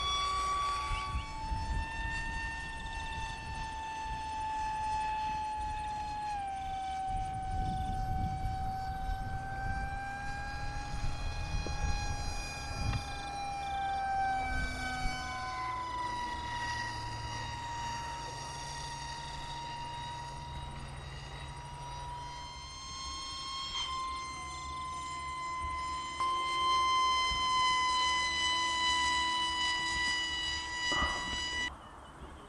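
Radio-controlled model aeroplane's motor and propeller whining steadily overhead. The pitch steps down twice in the first seconds, jumps back up about halfway through and rises a little later, following the throttle and the plane's passes.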